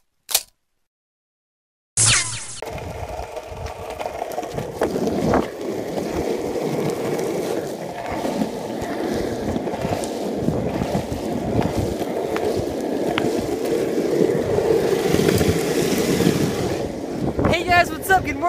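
Longboard wheels rolling over asphalt, picked up by a camera riding on the board: a steady rolling rumble that starts suddenly about two seconds in and runs on unbroken.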